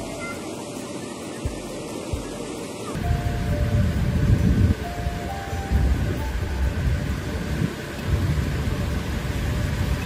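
Rainstorm: a steady rush of rain. About three seconds in, a cut brings a louder, uneven low rumbling, as from thunder.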